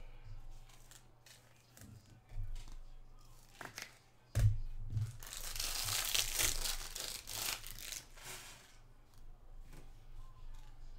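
Foil wrapper of a trading-card pack being torn open and crinkled in the hands, densest from about five and a half to eight seconds in. A few dull thumps of the pack being handled come before it, the loudest about four and a half seconds in.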